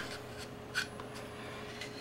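Faint handling sounds of an AR-style pistol being held over a wooden tabletop: quiet rubbing and shuffling with one small click a little under a second in.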